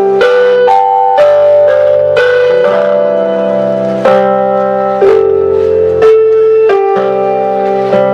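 Slow piano music: a melody of held notes and chords, a new one struck about once a second.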